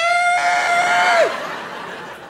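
A man's voice imitating a small child's wail after bumping its head: one long, loud cry that rises at the start, holds steady, then drops off about a second and a half in.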